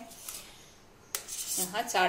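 A metal spoon scraping and clinking on a steel plate as chopped green chillies are pushed off into a glass bowl, starting suddenly about a second in.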